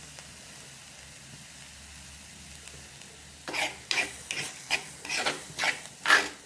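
Shredded cabbage stir-frying in a pan: a faint, steady sizzle, then, from about three and a half seconds in, a run of quick scraping strokes as it is stirred against the pan.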